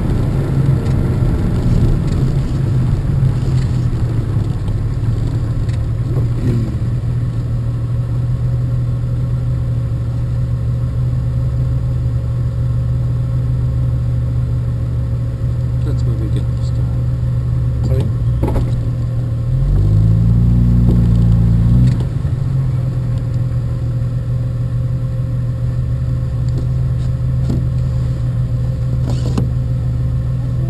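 Citroën Traction Avant 15 Six's straight-six engine running steadily at low speed in slow traffic, with a brief rise in revs about twenty seconds in as the car moves up.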